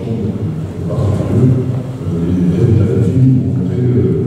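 A man's voice over a public-address system, muffled and indistinct.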